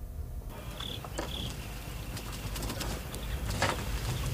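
Outdoor farmyard ambience: a steady background hiss over a low rumble, with a couple of short bird chirps about a second in.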